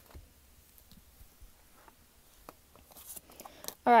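Oracle cards being handled and laid down on a soft cloth: faint scattered ticks and slides, busier in the last second.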